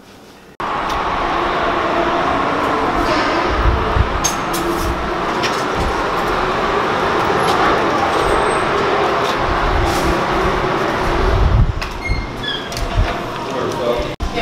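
Loud steady rumbling noise that starts suddenly about half a second in and gives way to softer, broken sounds near the end.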